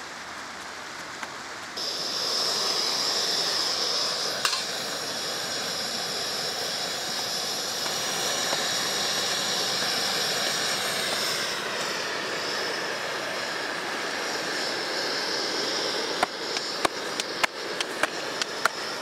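Portable gas-cylinder stove burner hissing steadily under a frying pan, starting about two seconds in, over the rush of a river. A run of sharp clicks near the end.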